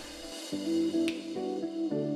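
Background music: plucked guitar notes that come in about half a second in and play a light melody.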